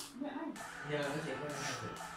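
A sharp click, then a voice over faint music as the opening of a K-pop music video plays back.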